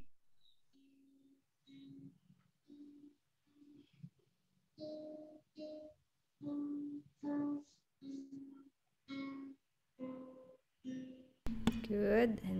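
Acoustic guitar picked one single note at a time in a slow, even finger exercise, about a dozen notes a little under a second apart. Heard over a video call, each note is cut off abruptly, with dead silence between notes.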